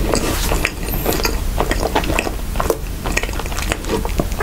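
Close-miked chewing of a soft white-bread sandwich with the mouth closed: a fast, irregular run of small clicks and smacks.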